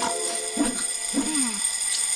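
An alarm-like ringing sound effect: steady high-pitched tones, with two short sounds falling in pitch under it.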